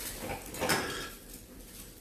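A brief clatter of decorations or household objects being handled and set down, loudest about three-quarters of a second in.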